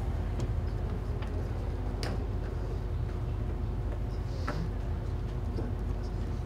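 Steady low hum of room noise, with a few scattered light clicks and taps. The loudest click comes about two seconds in.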